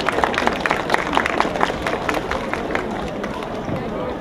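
Audience applauding with many separate hand claps, thinning out near the end.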